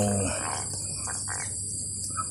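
A man's drawn-out 'wow' fades out at the start, leaving a steady high-pitched drone of insects.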